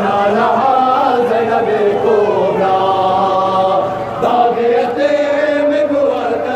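A man chanting a Shia mourning lament (noha) in long, drawn-out notes that rise and fall slowly.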